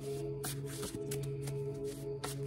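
Paper tarot cards being shuffled and handled by hand, with several short crisp snaps, over background music of steady held tones.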